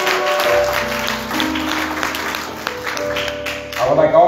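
Congregation clapping and applauding while instrumental music holds long sustained chords over a low bass note.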